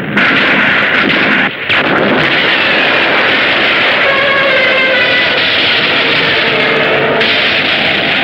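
Film sound effects of explosions and destruction: a continuous loud din that cuts in sharply at the start and again after a brief dip about one and a half seconds in. From about four seconds a wavering, pitched wail is layered over it.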